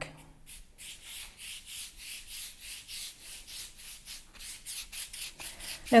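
A wide flat brush loaded with water sweeping back and forth over the back of a sheet of watercolour paper, a soft hissing rub at about two or three strokes a second. The paper is being wetted so that it can be weighted down and flattened.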